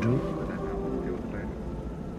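Steady low drone of a helicopter heard from inside the cabin, under quiet speech.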